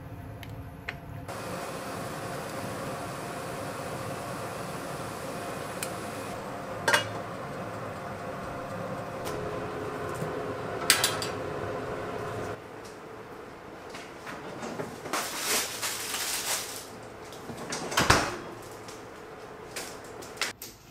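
Kitchenware being handled: a steady background hum for the first half, sharp clicks about a third and halfway through, then a run of clattering and a loud knock near the end.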